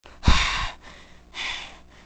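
A person's sharp gasp close to the microphone, with a low thump of breath on the mic at its start, followed about a second later by a softer second breath.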